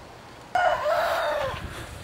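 A rooster crowing once, starting suddenly about half a second in and trailing off after about a second.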